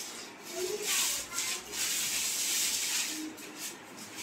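Plastic shrink wrap being pulled and rubbed off a cardboard monitor box: a loud rustling, rubbing noise that swells about a second in and lasts about two seconds.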